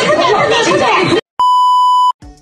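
A woman's shouted voice cuts off a little past one second in, and after a brief silence a steady, loud 1 kHz test-tone beep sounds to the end: the television colour-bar test signal.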